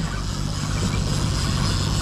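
A boat's outboard motor running with a steady low hum, over a steady hiss.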